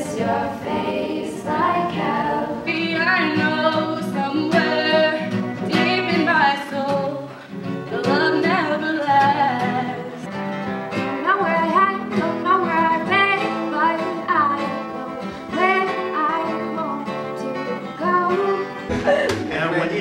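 A young woman singing a melody to an acoustic guitar.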